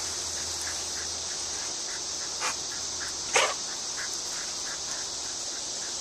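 A dog gives two short, sharp barks about a second apart near the middle, over a steady high-pitched background hiss with faint, regular chirps.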